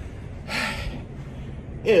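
A man's audible breath, a short sharp intake about half a second in, over a low steady hum; he starts speaking near the end.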